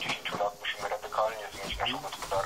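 Speech only: a voice talking with the sound of a radio broadcast.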